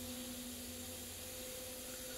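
Room tone: a steady faint hum with a hiss beneath it, unchanging throughout.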